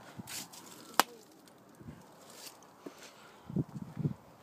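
A single sharp click or knock about a second in, preceded by a brief rustle, with a few dull thumps near the end.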